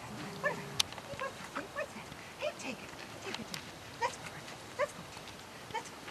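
A puppy making short, scattered growls and yips while tugging on a toy in play.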